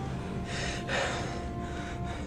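A person's breathy gasps, a few short breaths with the strongest about a second in, over a faint sustained music note.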